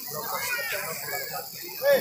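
Background chatter of several people talking, with a short, louder voice call just before the end.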